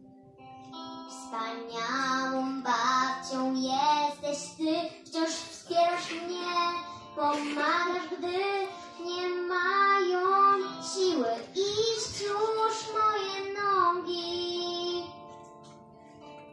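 Children singing a Polish song with instrumental accompaniment, the voices starting about a second in after a short lull.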